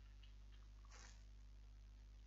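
Near silence: a steady low hum of the recording chain, with one faint, brief hiss about a second in.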